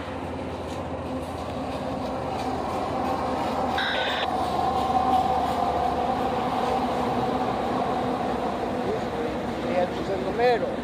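Diesel freight train with two locomotives leading, rumbling across a railroad bridge and getting louder as it comes closer. A brief high-pitched tone sounds about four seconds in.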